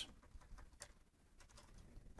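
Faint computer keyboard keystrokes: a few scattered soft clicks over near silence.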